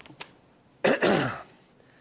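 A man clearing his throat once, about a second in: a short, rough burst.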